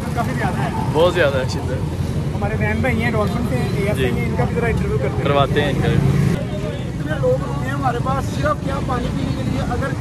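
Several people talking at once, indistinct, over the steady rumble of busy street traffic with motorcycles and auto-rickshaws.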